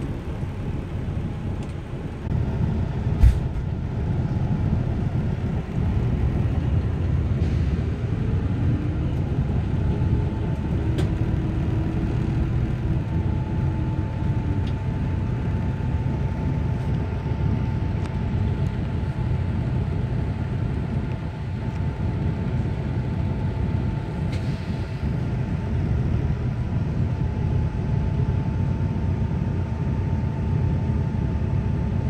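Diesel coach bus engine running with a steady low rumble, heard from inside the passenger cabin, with a steady high whine over it through the second half. A single sharp knock about three seconds in.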